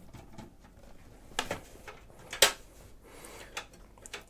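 Screwdriver turning out the screw of a PC case's PCIe slot blanking plate, and the metal plate being handled, with a few light metallic clicks, the sharpest about two and a half seconds in.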